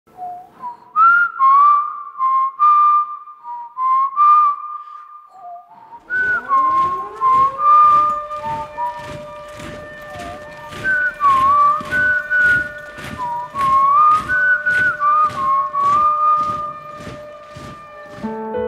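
A man whistling a slow, wavering melody. About six seconds in, a low sustained tone slides upward, then levels off and holds beneath the whistling, with a steady ticking of about two beats a second.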